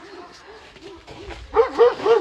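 Central Asian Shepherd dogs whining and yipping in a string of short rise-and-fall calls. The calls are faint at first and turn loud about a second and a half in.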